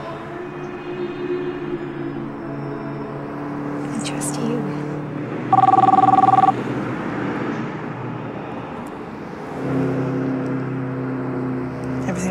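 A mobile phone sounds one loud electronic two-tone signal, about a second long, midway through, over background music of sustained low notes.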